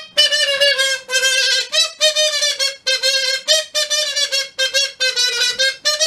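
A short wordless tune of about ten notes, nearly all on the same pitch, some starting with a slight upward flick. It is the lead-in to a puppet's song.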